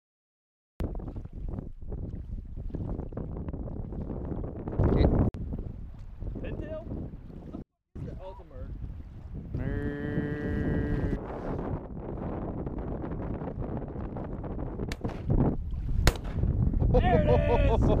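Wind buffeting the microphone over choppy sea water around a low layout boat, with a loud gust about five seconds in. A single held note lasts about a second and a half around the ten-second mark, and a voice calls out near the end.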